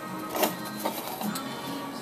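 Clear plastic baseball display case being handled: a few light clicks and knocks of plastic, the clearest about half a second in, over faint background music.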